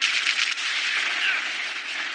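Animated battle sound effects: a sudden, loud, rapid crackling rattle like gunfire that runs on as a dense rush, with a few short falling whistles.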